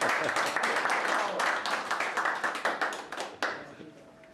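A small group of people clapping by hand, dying away after about three and a half seconds.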